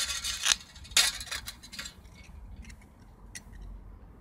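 Cut pieces of a thin steel spray-paint can being handled: the curved base and the cut-out metal disc scrape and clink against each other and the brick paving. A few scrapes come in the first two seconds, then only light ticks.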